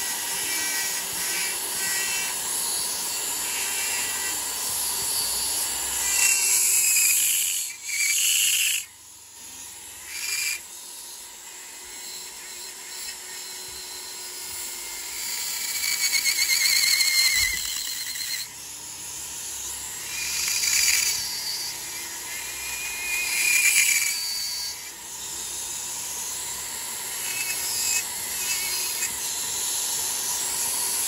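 Handheld rotary tool spinning a small burr against a piece of walrus ivory: a high, whining grind that swells and eases as the burr is pressed in and lifted off, dropping away briefly about nine seconds in.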